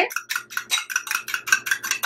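Fork whisking egg white in a glass bowl, the tines clicking against the glass in a fast, even rhythm of about nine strokes a second.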